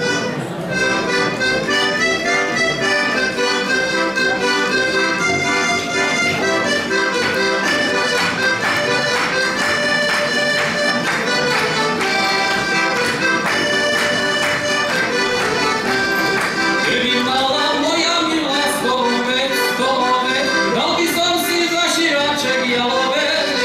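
Slovak heligónka, a diatonic button accordion, playing a lively folk tune. From about three-quarters of the way through, a man's voice starts singing along with it.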